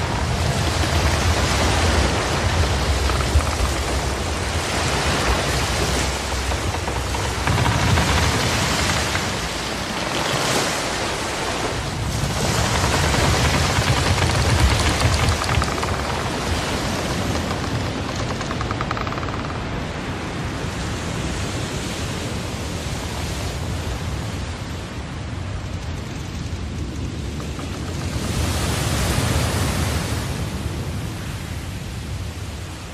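Loud, steady rushing of wind and sea that swells and eases every few seconds, with deep rumbles in the louder swells.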